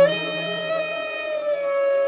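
Flute holding one long note that sinks slightly in pitch, over a low drone that fades out about halfway through.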